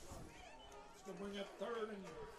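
Faint distant voice making two short drawn-out calls, about a second in and again just after.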